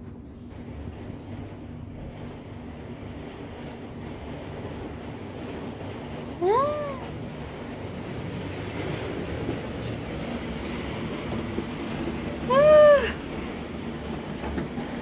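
A domestic cat meowing twice, each a single call that rises and falls in pitch, about six seconds apart; the second is louder. A steady hiss runs underneath and grows slowly louder.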